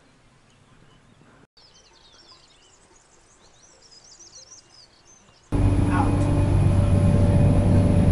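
Quiet outdoor air with birds singing in short, quick chirping phrases. About five and a half seconds in, a sudden cut to the loud, steady running noise and low hum of a narrow-gauge passenger train heard from inside the carriage.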